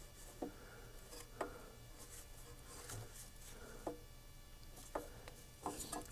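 Faint hand work on an ATV's rear: four light clicks and knocks, spread a second or more apart, over a low steady background.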